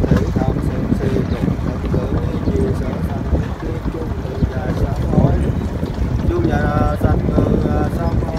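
Voices chanting a Buddhist prayer in Vietnamese, half buried under heavy wind buffeting the microphone; a few held chanted notes stand out about six and a half seconds in.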